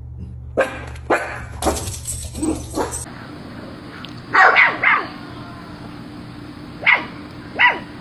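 Miniature schnauzer barking in short bursts: about five quick barks in the first three seconds over a low hum. Then, after a sudden change in the background, three loud barks close together, and two more single barks near the end.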